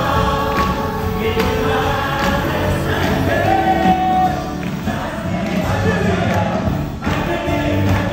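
Live praise band with acoustic guitars and keyboard playing a Korean worship song while singers and the congregation sing along together.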